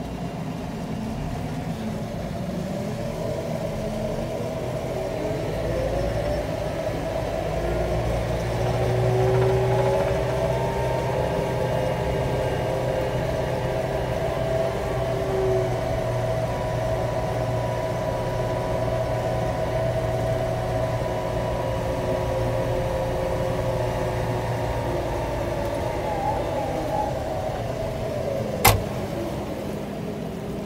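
JCB 540-140 Loadall telehandler's diesel engine, heard from inside the cab while the machine drives. The engine note rises about eight seconds in, holds steady, then drops near the end, just before a single sharp click.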